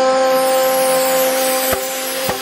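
Background music holding one long sustained note, with a sharp click near the end.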